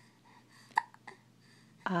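An infant's single short hiccup about three quarters of a second in, followed by a fainter little catch of breath.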